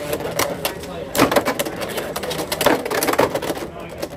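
Two Beyblade X spinning tops battling in a plastic stadium: a steady whir with rapid clicks and knocks as they clash with each other and the stadium rail, loudest about a second in and again around three seconds in.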